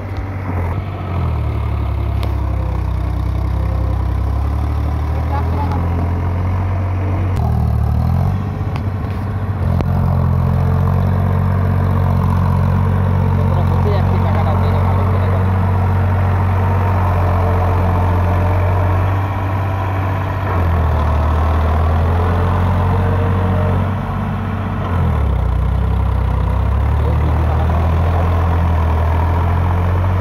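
Diesel farm tractor engine running steadily under load as its cage wheels churn through a flooded paddy. The engine note dips briefly about a quarter of the way in and twice more in the second half, then picks back up.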